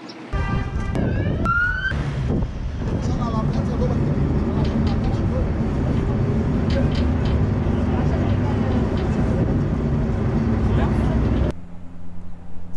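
Steady low rumble of a boat under way on the water, its engine mixed with wind and water noise; it cuts off just before the end. About a second in there is a short rising whine.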